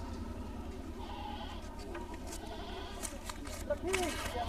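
Goats bleating faintly against low background chatter, with a short arching bleat near the end and a few soft ticks.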